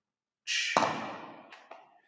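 A man's loud, sigh-like breath out while holding a deep stretch, starting about half a second in and trailing off over about a second, with a dull bump partway through and two faint clicks near the end.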